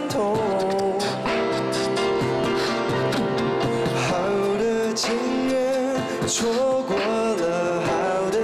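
A male voice singing a slow Mandarin pop ballad, accompanied on grand piano, with a beatboxer's mouth-made drum strokes keeping the beat.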